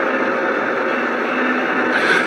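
Steady road and engine noise inside a moving car's cabin, an even hush with a faint hum.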